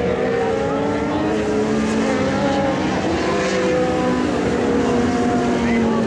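Several winged micro sprint cars running together on a dirt oval, their engines overlapping in a steady drone with pitches drifting only slightly and no hard revving.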